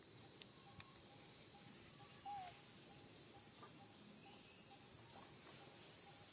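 Steady high-pitched insect chorus from the surrounding forest, with a faint short note repeating about twice a second and a single short falling call about two seconds in.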